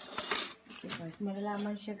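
A short burst of noise and clicks in the first half second, then a woman's voice speaking in drawn-out, steady-pitched syllables.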